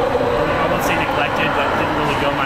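A man talking over a steady background din.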